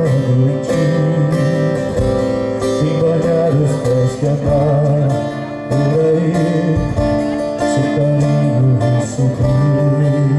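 Live band music played through a PA: strummed acoustic guitar over a bass line, with cajón and drum strikes keeping the beat, and a male voice singing a wavering melody line.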